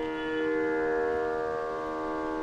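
Steady background music drone: several held tones sounding together without change.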